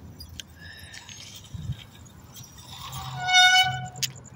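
Bicycle brakes squealing, one steady high tone held for about a second near the end, over a low rumble of wind on the microphone while riding.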